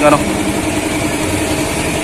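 Motorcycle engine idling steadily, an even low rumble with a fast regular beat.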